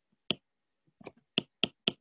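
A stylus tip tapping and clicking on an iPad's glass screen while writing: about five short sharp clicks, one early and four in quick succession in the second second.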